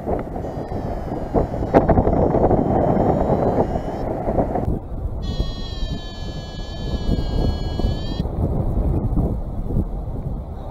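Wind rushing over the microphone in paraglider flight, heavy for the first four seconds or so and calmer after. About five seconds in, the paragliding variometer sounds a steady high electronic tone for about three seconds.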